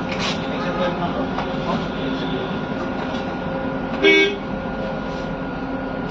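Steady engine and road drone heard from inside a city bus, with a faint constant hum. A short horn toot, the loudest sound, comes about four seconds in.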